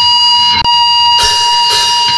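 A steady, piercing high tone, alarm-like, held through the break between two tracks of a grindcore recording. It drops out for an instant about half a second in, and about a second in the band's distorted noise comes back in under it.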